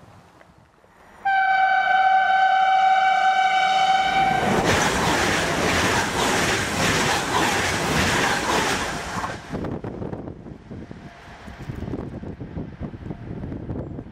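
A train horn sounds one steady note for about three seconds, then an electric train passes close at speed: a loud rush of wheels on rail and air that fades after about five seconds.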